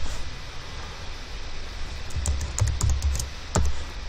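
Computer keyboard keystrokes: a short run of clicks in the second half, over a steady background hiss.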